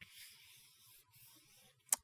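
Palms rubbing over paper, smoothing a glued watercolor-paper panel down onto a card base: a faint dry rubbing, one longer stroke and then a shorter one.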